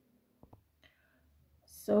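Near silence between spoken instructions, broken by a couple of faint brief clicks about half a second in; a woman's voice starts just before the end.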